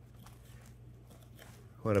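Faint small scrapes and clicks of a knife and carving fork working a roast turkey breast off the carcass, over a low steady hum. A man's voice starts near the end.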